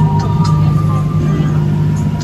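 Motor of a covered wooden sightseeing boat running with a steady low drone.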